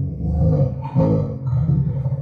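Playback of a slowed-down EVP recording through a speaker: a low, drawn-out, voice-like sound broken into a few syllables, which the recordist hears as his son saying "Dad, how are you?".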